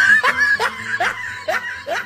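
A person laughing in short, rhythmic bursts, about two to three a second, each rising in pitch.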